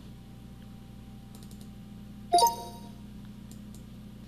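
A few faint mouse clicks, and a little past two seconds in a short two-note computer chime as the VoxCommando voice-control program restarts.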